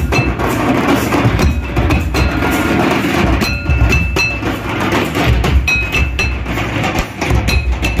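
Santal tamak kettle drums beaten with pairs of sticks in a steady, repeating dance rhythm.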